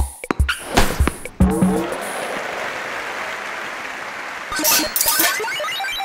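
Cartoon sound effects of a tennis rally: a few quick racket-and-ball hits in the first second and a half, then a long steady noise that runs on with background music. A few short bright sounds come near the end.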